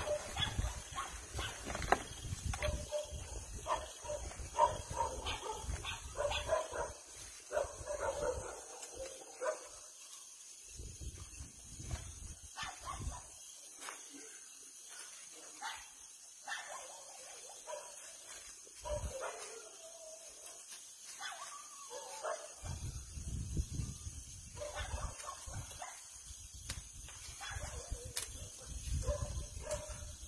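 Dogs barking in scattered bouts, with quieter stretches in the middle. A low rumble comes and goes in the first seconds and again near the end.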